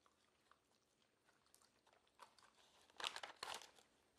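Soft, moist licorice being chewed, with faint wet mouth clicks, then two louder crackly sounds close together about three seconds in.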